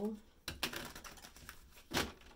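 A deck of cards being shuffled by hand: a rapid patter of card edges starting about half a second in, with a sharper tap near the end.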